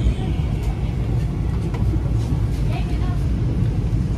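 Steady low rumble inside a Vande Bharat Express electric train coach, the running noise of the train, with faint voices in the middle.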